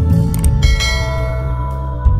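A bright notification-bell chime sound effect, ringing out a little over half a second in and fading, over background music.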